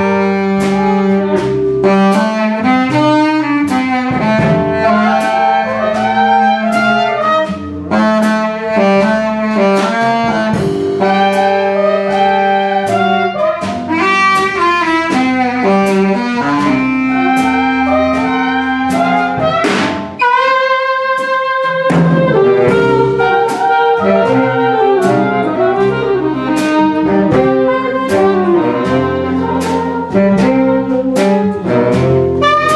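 Big-band jazz orchestra playing: saxophones and trumpets over a drum kit with regular hits. About twenty seconds in, the bass and drums drop out for a couple of seconds under a held horn chord, then the full band comes back in.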